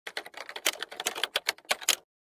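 Typing sound effect: a rapid, irregular run of key clicks that stops abruptly, as if text were being typed out.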